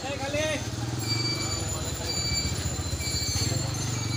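Busy street noise: a vehicle engine running steadily close by, with a brief voice rising over it just after the start.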